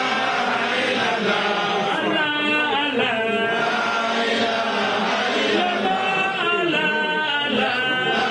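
Many voices chanting together in unison, with long, wavering held notes and no breaks.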